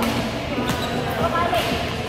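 Indoor badminton play: sharp racket-on-shuttlecock hits about a second apart, with short shoe squeaks on the court floor and background voices echoing in the hall.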